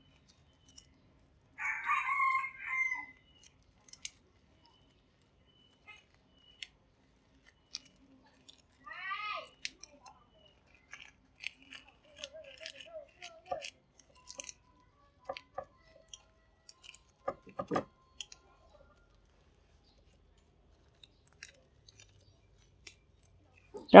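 A rooster crowing about two seconds in, with softer calls later. Scattered light clicks and crinkles come from rice paper being folded by hand.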